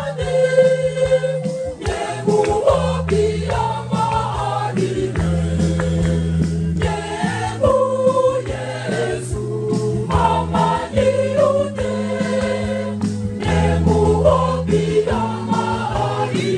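Mixed church choir singing an Advent hymn together in harmony, over an accompaniment of long held bass notes that change every second or two and a regular percussive beat.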